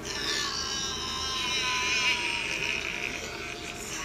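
A person's voice in one long, drawn-out wail, starting suddenly and held for almost four seconds. The pitch sags slightly and wavers near the middle.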